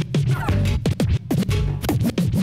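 Live DJ scratching: a vinyl record worked back and forth by hand on a Technics turntable and cut in and out in quick chops, its pitch sweeping up and down several times a second over a bass-heavy beat.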